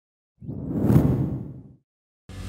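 Whoosh sound effect marking a cut between shots in an edited video, swelling up about half a second in and fading away before the end.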